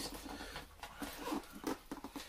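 Light scratching, rustling and small taps from hands handling a cardboard shipping box as it is opened.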